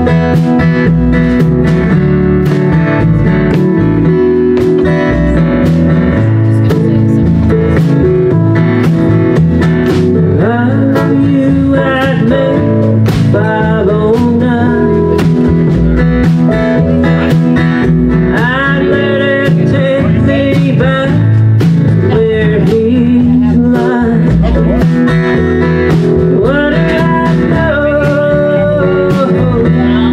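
Live band playing a slow country song: acoustic guitar strumming over keyboard and drums with regular beats, and a sliding melody line coming in about ten seconds in.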